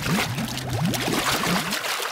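Cartoon sound effect of a boat sinking: a sudden rush of splashing water, with many quick rising bubbling blips as it goes under.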